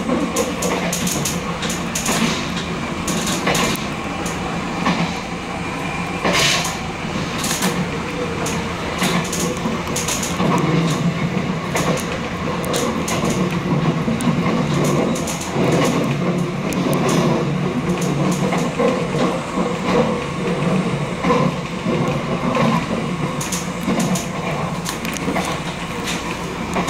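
Nankai limited express 'Southern' electric train running at speed, heard from just behind the driver's cab: a steady rumble of wheels on rail, with frequent irregular sharp clicks and knocks.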